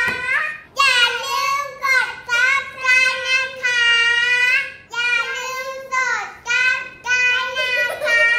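Young girls singing together in high voices, a phrase of held notes with a long sustained note near the middle and short breaks between lines.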